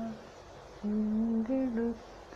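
A single voice chanting a devotional hymn on long, level held notes. The chant breaks off early on, resumes with a held note that steps up briefly and drops back down, then pauses again.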